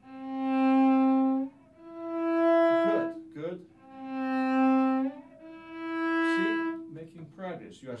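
Cello played with the bow in a left-hand shifting exercise: four long notes alternating between a lower and a higher pitch, low-high-low-high. Each note lasts about a second and a half and swells and fades, with short gaps between the notes.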